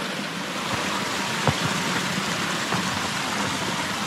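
A mountain stream running over rocks: a steady rush of water, with one faint click about a second and a half in.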